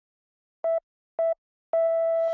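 Three electronic beeps at one steady mid pitch, about half a second apart, like time-signal pips: two short ones and a third that holds on, leading into a TV news intro jingle.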